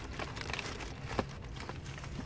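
Paper takeout bag and paper wrappers rustling and crinkling faintly as a hand rummages inside, with one sharper tick about a second in.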